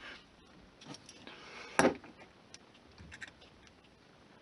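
Faint, scattered light clicks and ticks of small styrene strips and a hobby knife being handled on a cutting mat, with one sharper click a little before two seconds in.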